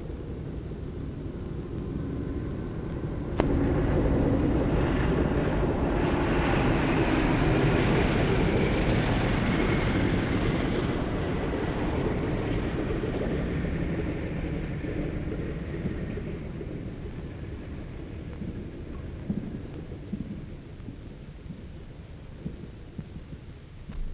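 The radial engines of a four-engined Martin M-130 Clipper flying boat droning as it flies past, on an old, hissy film soundtrack. The sound jumps up with a click a few seconds in, stays at its loudest for several seconds, then slowly fades away.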